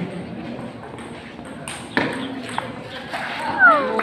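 Table tennis ball clicking sharply off paddles and the table as a point is served and played, with a few separate ticks from about halfway in. Near the end a high-pitched cry falls in pitch and is the loudest sound.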